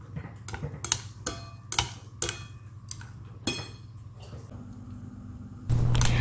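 Wooden chopsticks stirring thick fermented fish sauce in a ceramic bowl, with irregular light clicks and taps against the bowl. A loud steady low hum comes in near the end.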